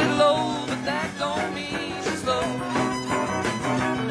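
Country-rock band playing live, an instrumental passage with a fiddle over guitar and rhythm.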